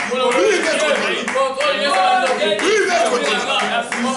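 A man praying aloud in loud, rapid speech, with scattered hand claps.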